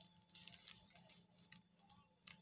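Faint scattered ticks and rustles as hands press a self-adhesive rhinestone mesh strip around a lantern base over plastic sheeting, against near-silent room tone.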